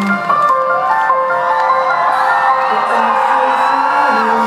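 A live rock band's last chord ringing out as the drums and bass stop, held steady notes under a crowd cheering and screaming.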